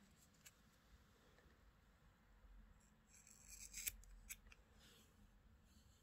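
Faint handling of scissors, with a few short sharp clicks around the middle, ready to trim the ends of a crocheted doll's yarn braids.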